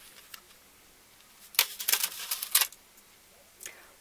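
A brief cluster of sharp clicks and rattles, starting about a second and a half in and lasting about a second: small craft items being handled and set down on a tabletop.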